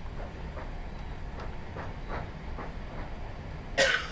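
Cabin sound of a British Rail Class 317 electric multiple unit on the move: a steady low rumble with a few faint clicks. A sudden, short, loud burst of noise comes near the end.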